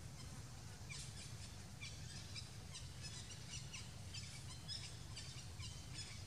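Birds chirping in quick, repeated short high calls from about a second in, over a steady low outdoor rumble.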